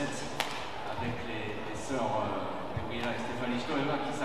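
Badminton racket striking the shuttlecock, one sharp crack about half a second in, over a steady background of voices in the hall.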